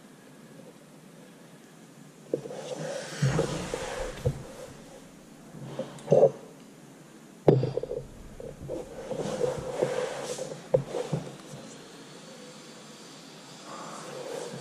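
Handling noise of a wrench being worked on a radiator's brass 90 elbow to snug it up and stop a small drip: irregular scrapes, knocks and rustles that start about two seconds in, with a sharp click about halfway through.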